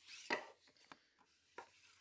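A few faint taps and clicks of rigid plastic card holders being handled and set against one another.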